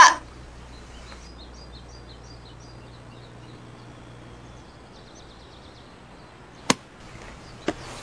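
Quiet outdoor ambience with a low hum and faint, high bird chirps, broken near the end by two sharp clicks about a second apart.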